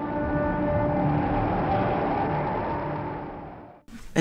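A sustained rushing, rumbling drone with a few steady tones through it, fading in and then fading out, used as a transition sound under a chapter title card.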